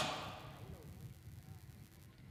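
A male commentator's word trailing off at the very start, then faint background noise with weak distant voices.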